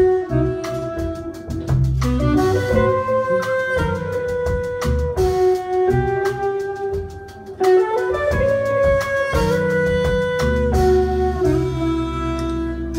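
Live jazz quintet playing: a saxophone holds long melody notes over an electric bass line, with a brief drop in the playing about seven seconds in.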